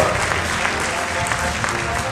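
Audience applauding at the end of a saxophone solo while the jazz band keeps playing underneath.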